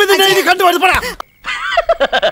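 A person's voice in a long, wavering, drawn-out cry that breaks off about a second in. After a short gap, more broken voice sounds follow.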